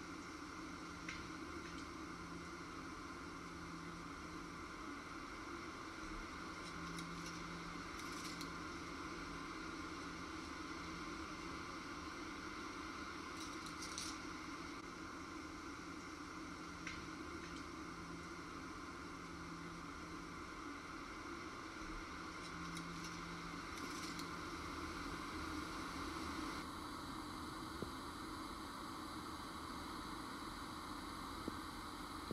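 Steady wind noise in the woods, an even hiss that swells a little near the end, with a few faint, brief rustles.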